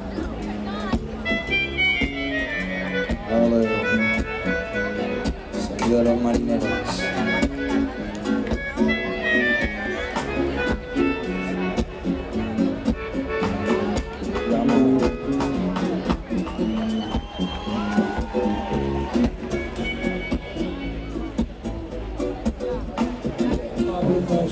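Melodica played live in quick runs of notes, several of them falling, over a band with drums and bass keeping a steady beat.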